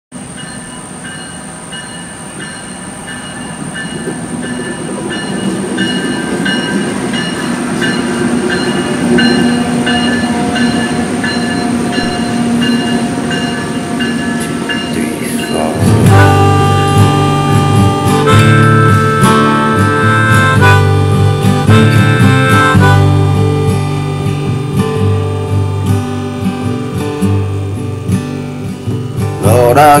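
A train, with steady ringing tones over a rumble, growing louder over the first half. About halfway in, music with sustained low chords comes in over it, the chords changing every two seconds or so.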